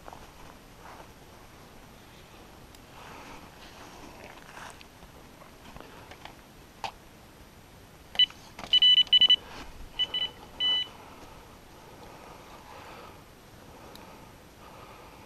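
Electronic carp bite alarm beeping: a quick run of short high beeps about eight seconds in, then two more single beeps over the next couple of seconds.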